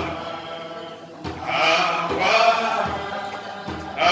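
Congregation singing a chant-like church song in unison, softer for the first second, then swelling again, with a steady low beat under it.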